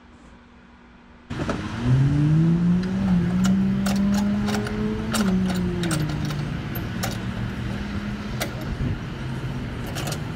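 A motor vehicle engine nearby: its pitch rises quickly about two seconds in, holds steady, then drops a little twice. Sharp clicks and knocks over it from hands working at a metal roof cargo basket.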